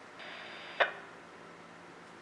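A plastic TV remote control slid briefly across a workbench, then one sharp plastic clack as it is handled against the bench.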